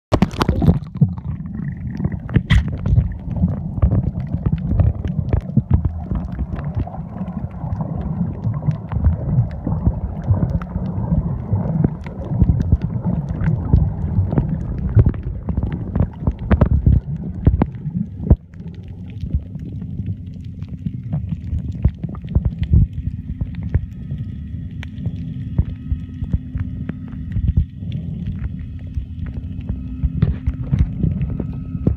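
Water sloshing and knocking around a camera microphone held in the sea, heard muffled underwater, with many sharp clicks throughout. About two-thirds of the way in the rumble drops and a steady low hum comes in, joined by a few faint high steady tones.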